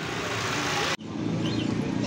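Outdoor street noise with traffic rushing, cut off suddenly about a second in, then the murmur of a crowd of people talking.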